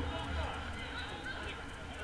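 Distant shouts and calls of footballers across the pitch, heard over a steady low rumble of wind on the microphone.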